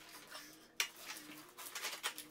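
Paint roller loaded with thinned joint compound rolling across a textured ceiling: a faint, sticky crackle with a sharp click a little under a second in and quick ticks near the end.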